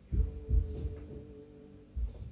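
Dull low thumps, two close together near the start and one at the end, from a finger pressing the keys of a 4x4 membrane keypad held in the hand. Under them runs a steady low hum.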